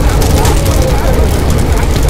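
Large blaze of burning scrap wood with a loud, steady low rumble, and faint voices underneath.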